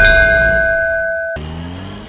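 Cinematic title-card sound effect: the decaying rumble of a heavy impact with a ringing, bell-like metallic tone held over it, which cuts off suddenly about a second and a half in; a quieter low held note follows.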